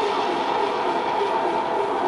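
Live band's electric guitar and keyboard playing a steady, droning wash through the PA, heard from the audience.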